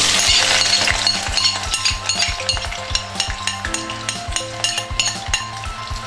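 Chopped onions poured into hot bleached palm oil in a saucepan, sizzling, the hiss strongest in the first second as they hit the oil. Background music with a steady beat plays throughout.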